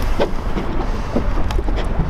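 Wind rumbling on the microphone, with scattered short clicks and knocks.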